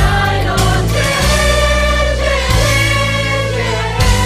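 A song: a choir of voices singing long held notes over instrumental backing with a steady bass line.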